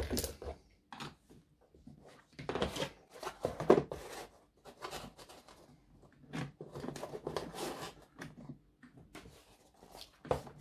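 Hands taking the stock wheels off a 1/14 scale RC semi trailer's axles and setting them on a cutting mat: a run of small plastic and metal clicks, knocks and rubbing, in two busy spells, with the loudest knock about four seconds in.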